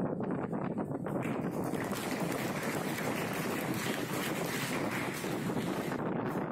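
An audience clapping, building up about a second in and continuing until it stops near the end.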